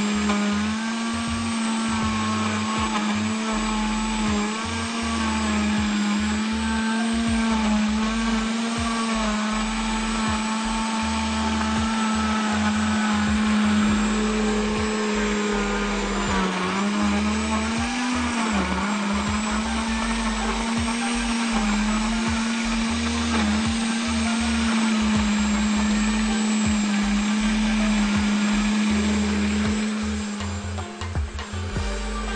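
Countertop blender running continuously, blending vanilla ice cream and chocolate sandwich biscuits into a shake. Its motor hum wavers in pitch as the load shifts, dips and rises a little past the middle, and stops at the end.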